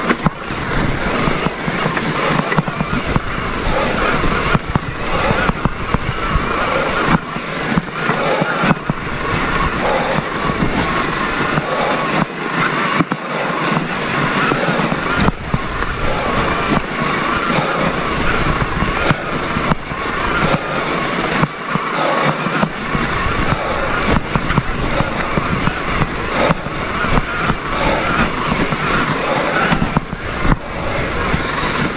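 Mountain bike riding over a rough dirt trail, heard through a helmet-mounted action camera: steady wind rumble on the microphone with a constant stream of crackling knocks and rattles from the bike and the camera mount jolting over the ground.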